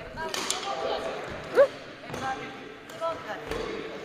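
Badminton footwork and racket play on a wooden gym court: scattered taps and thuds, with a short rising squeak about one and a half seconds in. Faint voices sit behind.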